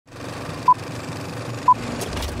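Film countdown leader beeps: two short, high, pure-tone beeps one second apart, over a steady hiss.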